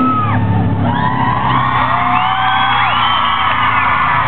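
A live rock band's song ends. The full band sound drops away at the start, leaving a low note held and ringing, while a festival crowd cheers and whoops with rising and falling calls.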